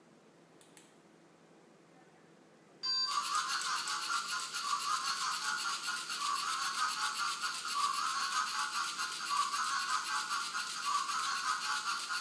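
Lego Mindstorms NXT skeleton robot starting up: a couple of faint clicks, then a loud buzzing rattle that starts abruptly about three seconds in and carries on steadily.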